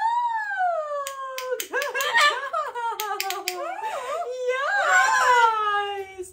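A double yellow-headed amazon parrot and its owner vocalizing together: one long call that slides slowly down in pitch, overlapped by warbling chatter in the middle, with several sharp clicks in the first half.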